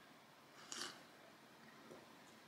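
Near silence with one brief, faint sip from a rocks glass of cocktail over ice, just under a second in.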